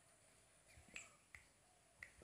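Near silence: faint outdoor room tone with a few soft, short chirps or clicks about a second in.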